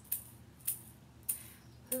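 Egg shaker shaken in a steady beat between sung lines: four crisp, high rattling shakes about 0.6 s apart.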